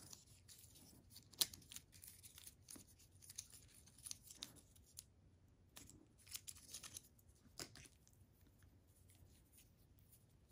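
Faint, scattered rustles and light clicks of a coiled USB-C to Lightning cable being opened up and uncoiled by hand.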